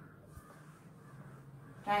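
Faint rubbing of a whiteboard eraser being wiped across the board.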